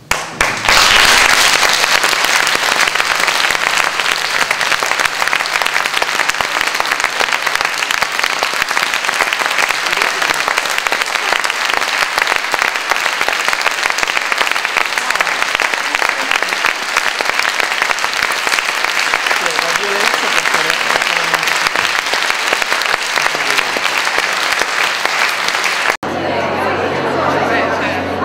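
Audience applauding: the clapping breaks out suddenly about half a second in and keeps up loud and steady throughout.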